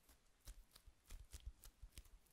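Faint, quick run of sharp clicks and taps, about ten in a second and a half starting about half a second in, from hands handling rolled-candle materials (beeswax sheets and tools).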